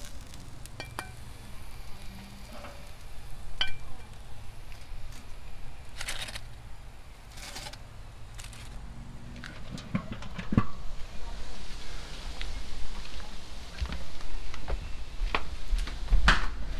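Grilled steaks and foil-wrapped potatoes being lifted off a charcoal grill's metal grate with tongs: scattered clicks and scrapes of metal on the grate, with faint sizzling from the coals. A sharper knock comes about ten seconds in.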